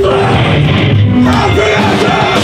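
Hardcore punk band playing live at full volume: distorted electric guitars, bass and drums with crashing cymbals.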